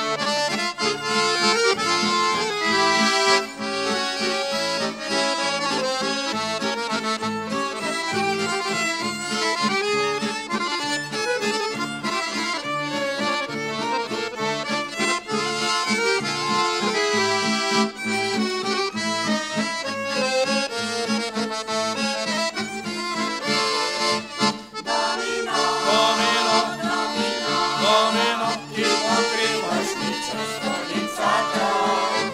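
Small folk band playing an instrumental passage: accordion in the lead, with violin and two acoustic guitars keeping a steady rhythm.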